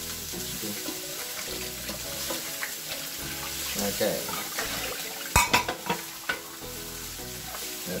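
Garlic fried rice sizzling in a frying pan as it is stirred with a wooden spoon. A little past halfway comes a quick run of sharp clacks, the spoon striking the pan.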